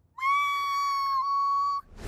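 A cartoon girl's long, high-pitched squeal through clenched teeth, a sheepish cringe. It is one held note that drops a little in pitch about a second in and stops just before the next line.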